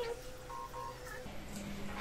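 Mobile phone on speaker placing a call: steady electronic call tones, changing to a lower steady tone a little over a second in.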